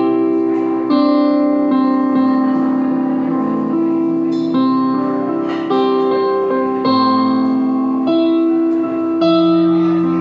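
Digital stage piano played through a PA: slow chords, a new chord struck about once a second and each left ringing until the next.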